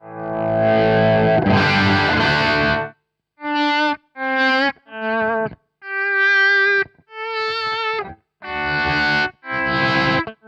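Sterling by Music Man Axis electric guitar played through an amp, fading in from silence as the Ernie Ball VPJR volume pedal is rocked forward from the heel position: one chord swells up and rings for about three seconds, then a string of short separate chords and notes follows.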